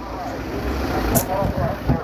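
Several people talking in the background over a low, steady rumble.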